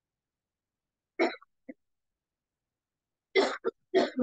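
A person coughing in short sharp bursts: once a little over a second in, then twice in quick succession near the end, with dead silence between them.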